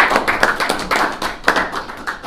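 Audience applause: many overlapping hand claps, each still distinct rather than merging into a wash, thinning out near the end.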